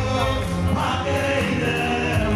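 Gospel praise music: a choir singing over instrumental backing with a steady low bass, continuous and loud.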